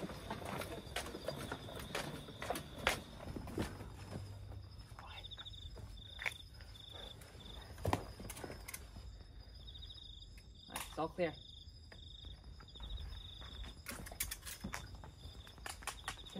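Crickets chirping in a steady, pulsing high trill, with footsteps on a path as soldiers walk through it.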